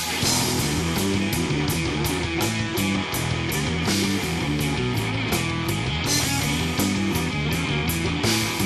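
Live rock band playing an instrumental passage: electric guitars over a moving bass line, with drums keeping a steady beat of cymbal strikes.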